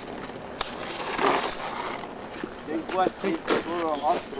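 Men's voices talking, with a single sharp click about half a second in and a brief rustle a little over a second in.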